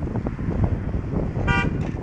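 A car horn giving one short toot about one and a half seconds in, over a steady low rumble.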